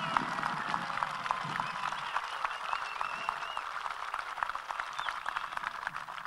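Audience applauding, the clapping slowly thinning out and fading over the last few seconds.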